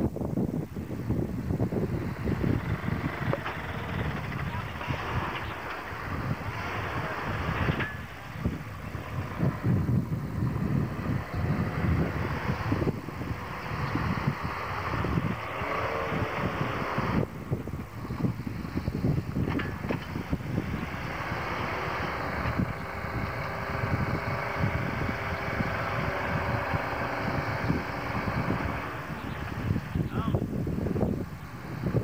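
Engine of a 4x4 Chevy Blazer running while the truck sits stuck in deep mud and is winched out, with heavy wind noise on the microphone. A steady whine joins it over roughly the last eight seconds.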